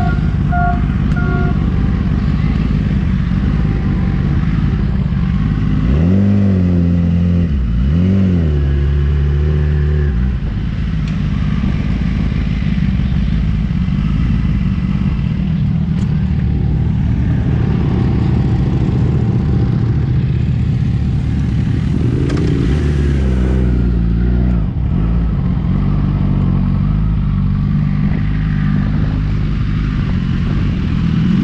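Motocross dirt bike engines running under race throttle, with engine pitch rising and falling as the bikes rev. Two louder, closer rev passes come about six seconds in and again a little past the twenty-second mark.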